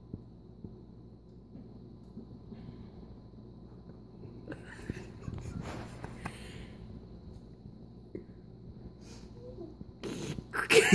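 Quiet room tone: a low steady hum with faint scattered rustles and small knocks, a little busier around the middle.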